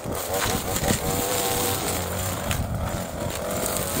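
String trimmer running at speed, its line cutting through thick, overgrown grass; a steady motor note rides over the noise of the cutting.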